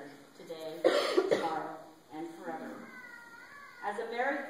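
A person coughing, a short harsh fit about a second in, the loudest sound here, with speech before and after it.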